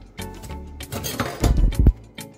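Metal kitchen tongs and a knife clink and knock against a wooden cutting board, with several short clicks. Near the end there is a heavy, dull thump as the roasted eggplant is set down on the board.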